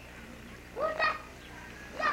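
A short, high-pitched two-note call about a second in, over a faint steady low hum.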